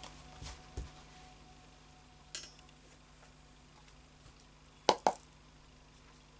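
A few light taps and clicks of small hard objects being handled on a table, the two sharpest close together about five seconds in.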